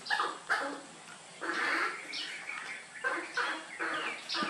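Baby macaque giving a run of short, squeaky cries, several of them falling in pitch.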